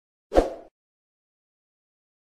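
A single short pop sound effect, about half a second in, from an animated channel end card.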